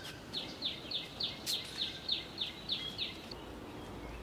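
A bird calling a quick series of about ten short, high notes, each sliding down in pitch, about three a second, stopping about three seconds in.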